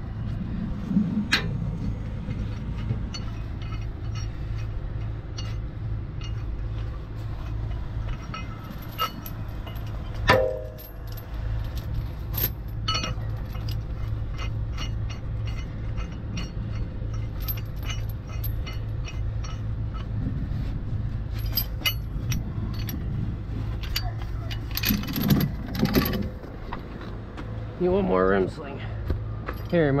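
Steel rigging chain clinking and rattling as it is handled, with one louder metal clank about ten seconds in, over a truck engine idling steadily.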